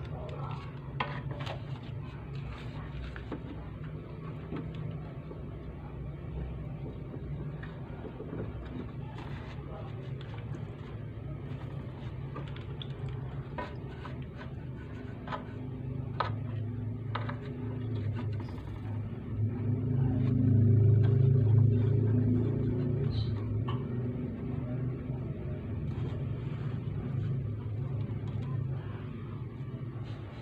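A low, steady rumble that swells to its loudest for a few seconds about two-thirds of the way through, like a passing motor vehicle. Faint scattered clicks run over it, from a soapy brush dabbing copper pipe joints during a leak test.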